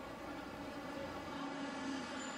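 Faint traffic noise from a busy city street, under the last ringing tones of a piano chord as it dies away.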